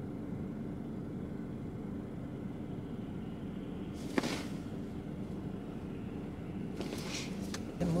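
Steady low hum inside a car's cabin from the idling engine of a car stopped in line, with a single sharp click about four seconds in.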